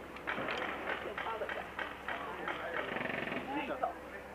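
Low, hushed voices with scuffing footsteps and short clicks and knocks on dirt close by.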